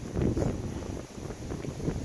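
Wind buffeting the microphone: an uneven low rumble, strongest in the first second.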